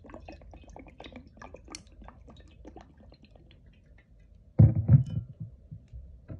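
Bourbon poured from the bottle over a large chunk of ice in a glass tumbler, with a quick run of small clicks and crackles as the liquor splashes and the ice cracks. About four and a half seconds in, two loud low thumps as the heavy glass bottle is set down on the table.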